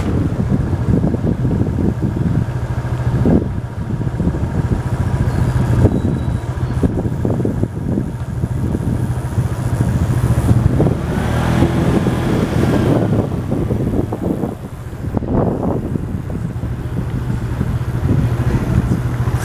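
Small motorbike or scooter engine running steadily while riding along a street, with wind and road noise. A pitch rises and falls briefly about eleven seconds in.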